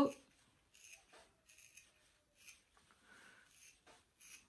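Faint, short scratchy strokes, about two a second, of a hand-stripping tool pulling the longest hairs and some undercoat from an Airedale Terrier's wiry neck coat.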